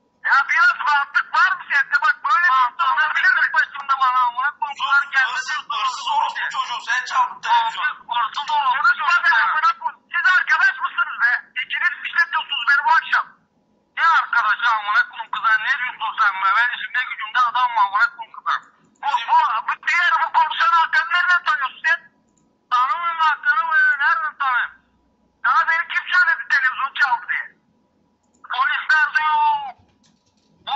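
Speech over a telephone line: voices sounding thin and narrow, talking almost continuously with a few short pauses.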